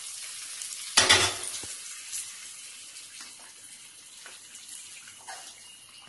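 Hot tempering sizzling on rice in an aluminium pot while a ladle stirs it in, the sizzle slowly dying away. A loud metal clank about a second in, then light clicks and scrapes of the ladle against the pot.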